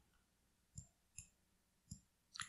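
Three faint, short computer mouse clicks, spaced unevenly, over near silence.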